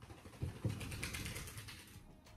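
Makeup brush stroking contour powder along the nose, the bristles rasping on the skin in a fine, fast scratchy texture that fades toward the end. Two soft low thumps come about half a second in.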